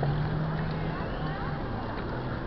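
Wind and road rumble on a handlebar-mounted camera as the bicycle rolls along, with a low steady hum through the first second and other riders' voices faintly in the background.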